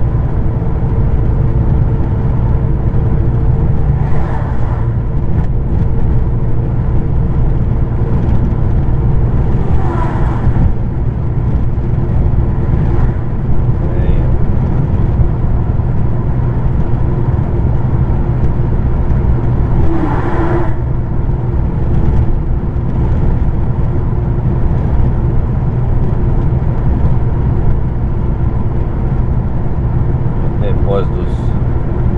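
Steady engine drone and road noise of a heavy truck at cruising speed, heard from inside its cab. A few short, louder sounds come through at about 4, 10 and 20 seconds in.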